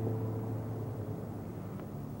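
Background music: the last strummed acoustic-guitar chord rings on and fades away over about the first second. A faint steady hiss is left after it.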